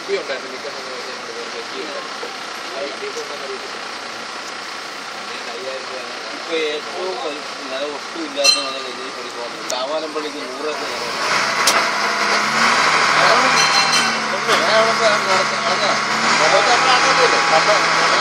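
Boat engine running under people talking. Its steady low hum sets in and grows louder about eleven seconds in.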